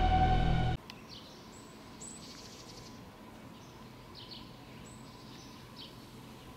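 Loud title music that cuts off suddenly under a second in, followed by quiet outdoor ambience with a few short, high bird chirps and thin whistles scattered through.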